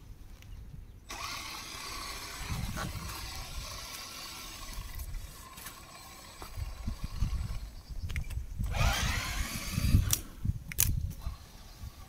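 Electric motor and gearbox of an Absima Sherpa RC crawler whining as it drives over dirt and leaves, the whine rising as it speeds up about nine seconds in, with low rumbling noise underneath.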